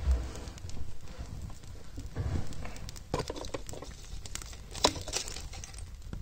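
Newly lit fire of wood shavings and kindling burning in a grate, with scattered crackles and one sharp pop about five seconds in. A dull thump comes right at the start.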